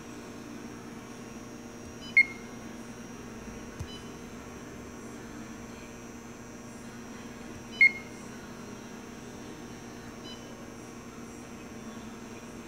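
Touchscreen of a press brake's CNC control giving two short high beeps, about five and a half seconds apart: key-press confirmations as fields on the tooling screen are touched. A steady low hum runs underneath.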